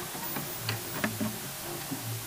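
Clock-like ticking sound effect, about three ticks a second, with short low notes under it and a steady hiss.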